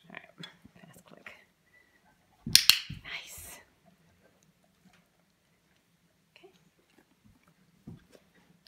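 Dog-training clicker clicked once, a sharp double click (press and release) about two and a half seconds in, followed by a brief rustle, marking the dog's behaviour as it is shaped toward a retrieve. Faint small clicks and handling noises come before it.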